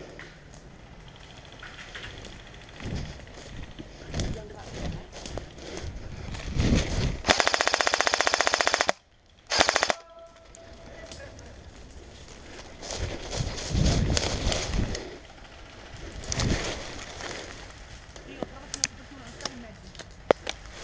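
Airsoft rifle firing full-auto: one rapid, evenly paced burst of about a second and a half, then a short second burst about a second later.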